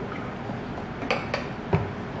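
A glass jar set down on a table while a plastic bottle is handled: three short clinks and knocks from about a second in, the last with a dull thump.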